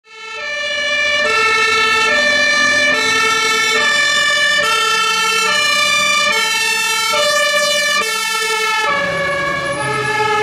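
Fire engine's two-tone compressed-air horn (German Martinhorn) sounding the alternating high–low call, switching notes a little under once a second, loud after fading in at the start. Near the end the vehicle passes close and its engine rumble joins in.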